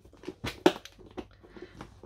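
A few light knocks and clicks as a clear plastic compartment box of small metal findings is handled and moved across a desk, the two loudest about half a second in.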